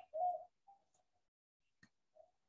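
A bird calling: a short cooing note in the first half-second, followed by a fainter brief note, and a single faint click shortly before the end.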